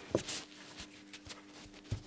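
A few irregular light clicks and knocks from a Webasto solenoid fuel dosing pump and its test wires being handled on a wooden bench, over a faint steady hum.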